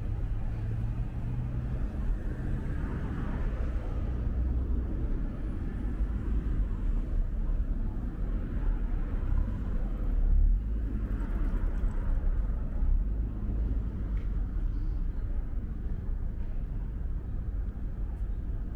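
Steady rumble of city road traffic, with no distinct event standing out.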